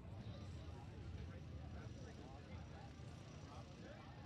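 Wind buffeting the microphone with a steady low rumble, under faint distant voices calling out across the field.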